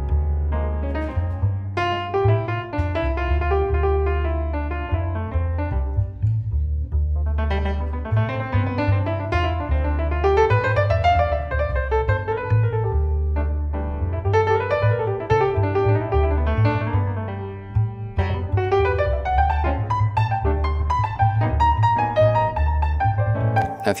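Recorded solo piano playing, its low end pushed up hard by a dynamic EQ boost around 111 Hz, so the low notes come through heavy and swell each time they cross the threshold. There is a brief lull about six seconds in.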